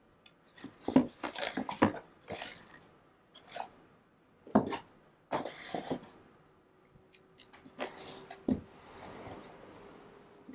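Spools of lace being handled and stacked, knocking against each other and the sides of a plastic storage bin in a string of irregular knocks and thuds, with some rustling near the end.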